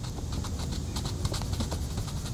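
Coloring strokes on paper: quick, light scratches of the coloring tool, several a second, over a steady low rumble.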